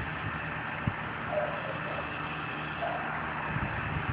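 Steady low mechanical hum under a constant hiss of outdoor background noise, with a few soft low thumps.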